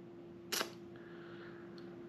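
Quiet room tone with a faint steady hum, broken by one short, sharp click about half a second in.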